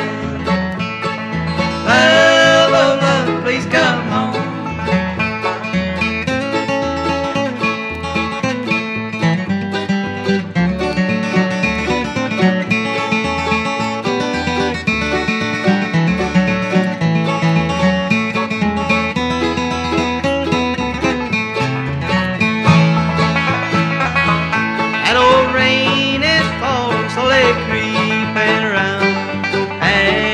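Traditional bluegrass instrumental break: five-string banjo and acoustic guitar playing together at a steady lively pace between sung verses.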